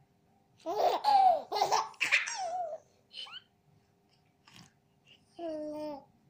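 Baby laughing and babbling in loud bursts for the first three seconds, then a short held vocal note near the end.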